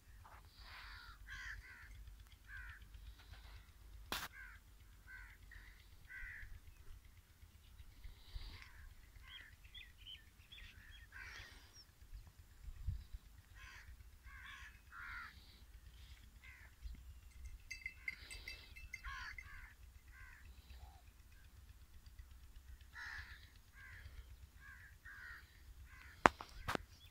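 Faint outdoor bird calls, crows cawing among them, repeated short calls through the whole stretch over a low rumble, with one sharp click about four seconds in.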